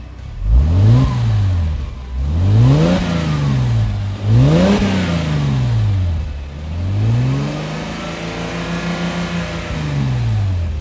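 Mercedes-Benz W211 E350's V6 engine revved in place through an AMG-style quad-tip exhaust: three short revs, each rising and falling, then a longer rev held for about two seconds before it drops back. The note is very refined.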